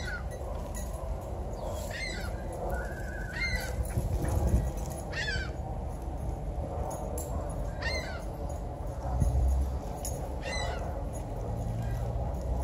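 A bird calling repeatedly outdoors: about six short, high calls that slide downward in pitch, spaced a second and a half to two and a half seconds apart, with one brief held note in between, over a steady low rumble.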